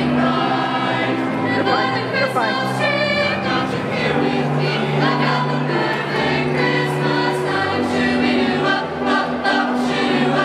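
Choir singing with musical accompaniment, held notes running on without a break.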